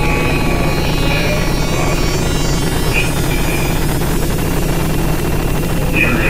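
A loud, steady low droning hum, with a few faint, brief high tones flickering over it.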